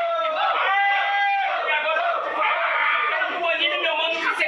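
Men's voices shouting and whooping in reaction to a rap-battle punchline, with long drawn-out cries about a second in.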